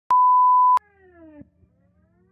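A 1 kHz reference test tone of the kind played with colour bars: one loud, steady beep lasting well under a second that cuts off suddenly. A much softer pitched sound follows, gliding downward for about half a second.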